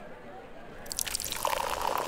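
Coffee being poured from a pot into a cup, starting about a second in.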